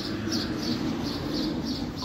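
A bird chirping over and over, a short high note about three times a second, over a low steady rumble.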